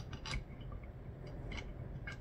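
A few faint metal clicks and taps as a painted telescope clamshell is handled and seated onto a machined metal mount adapter, being lined up with its bolts.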